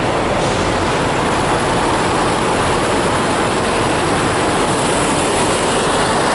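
Steady, even mechanical noise of parked semi-trucks idling, holding the same level throughout.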